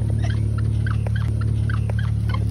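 A car engine idling as a steady low hum, with faint short squeaks and small clicks from someone climbing into the seat.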